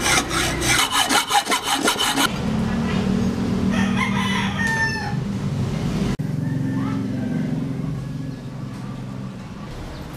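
Quick, even rasping strokes of a hand tool working metal, about five a second, stopping a little over two seconds in. Then a rooster crows twice.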